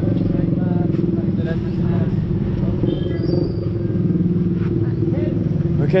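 A motorcycle-sidecar tricycle's motorcycle engine idling steadily while parked.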